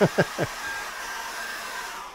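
Handheld hairdryer blowing steadily, drying wet acrylic paint on a canvas.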